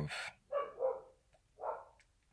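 A dog barking twice, once about half a second in and again near the end, quieter than the voice.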